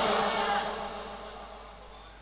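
The fading tail of a man's chanted recitation over a public-address system: a last held note that dies away into echo over about two seconds.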